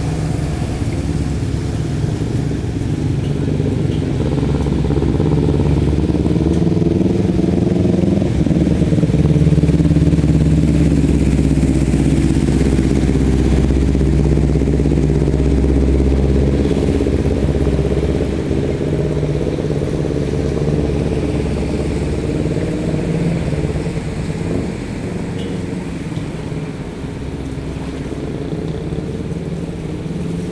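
Small motorcycle engine running steadily while riding through floodwater on a street, getting louder toward the middle and easing off in the second half.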